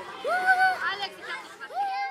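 Children's voices: a child calls out twice with long, high calls over the chatter of other children.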